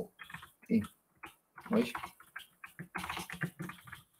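Computer keyboard typing, a run of quick keystrokes in the second half, with a few short murmured syllables from a man's voice earlier on.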